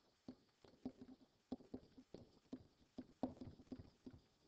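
Faint, irregular taps and scratches of a stylus on a tablet surface while words are handwritten, about three a second.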